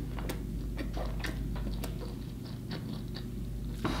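A person chewing a mouthful of bacon cheeseburger with the mouth closed, close to the microphone: soft, irregularly spaced clicks and smacks.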